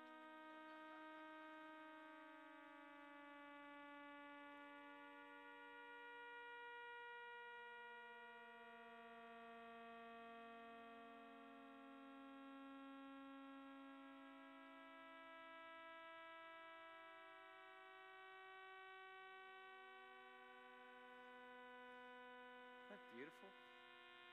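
Sonification of the millisecond pulsars in the star cluster 47 Tucanae: many sustained tones sound together as a slowly shifting chord, individual notes changing pitch every few seconds. It is faint, with a string-section-like quality.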